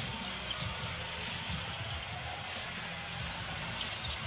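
Faint in-game arena sound under a basketball broadcast: quiet background music and court noise, with a few light taps.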